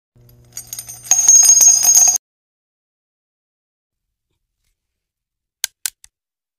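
A bright jingling, bell-like chime sound effect for about two seconds. It gets louder about a second in and cuts off abruptly. Then silence, broken by two short clicks near the end.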